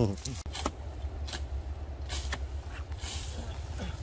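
Steady low rumble of wind on the microphone in an open field, with a few short rustling noises.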